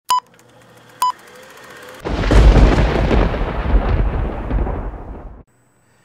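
Intro sound effects: two short, high beeps about a second apart, then a sudden loud boom with a deep rumble that fades away over about three seconds.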